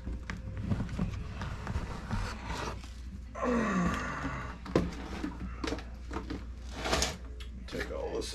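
A clear plastic bin holding glass jars and keyboard mylar sheets being picked up and moved on a workbench: rustling plastic and several light knocks. A man clears his throat about halfway through.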